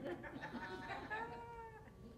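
A faint, high-pitched, drawn-out vocal sound from a person in the room, lasting about a second and a half with a gently rising and falling pitch.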